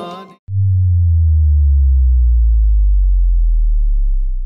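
A song cuts off about half a second in, and a loud, deep synthesized tone follows, slowly falling in pitch: an outro sound logo.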